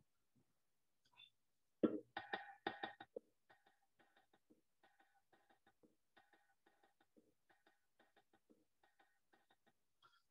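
Recorded bongo rhythm, the Arabic Malfouf in 2/4 with an embellishment layer, heard through a video call. The strokes start about two seconds in and are clear for about a second, then drop to faint while the rhythm keeps going: the call's audio is falling off, which the presenter puts down to feedback.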